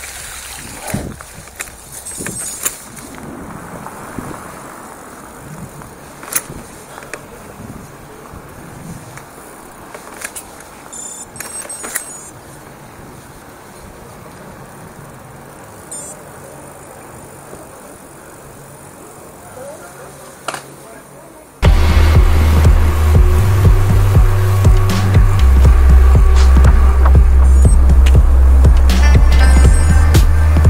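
Bicycle riding noise: tyres rolling over a track, with scattered knocks and rattles. About two-thirds of the way through, loud background music with a heavy bass line and a steady beat cuts in abruptly and takes over.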